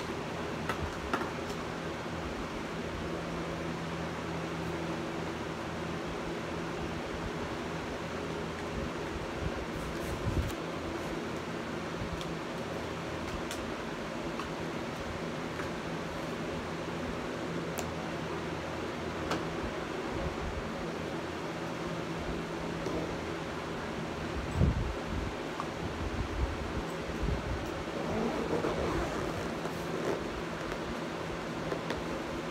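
A fan's steady hum, with a few soft knocks and rustles from things being handled and packed into a bag, about ten seconds in and again near the end.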